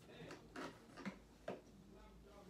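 Quiet room with three faint, short knocks about half a second apart.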